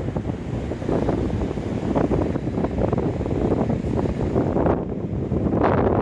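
Strong wind buffeting the microphone, a loud, gusting low rumble that rises and falls.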